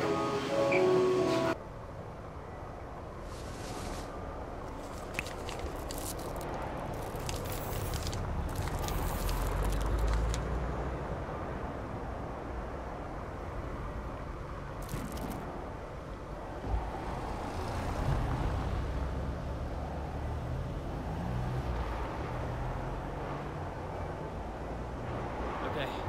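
Music stops about a second and a half in, leaving a low steady rumble with scattered crinkling from a snack wrapper being handled.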